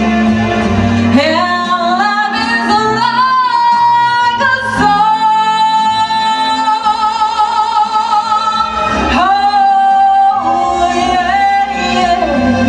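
A woman singing into a microphone over instrumental accompaniment, holding long notes with vibrato, the longest from about four seconds in to about nine seconds.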